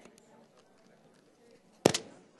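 Quiet room tone with a few faint small clicks, then a sharp, loud knock with a quick double clatter close to a microphone near the end.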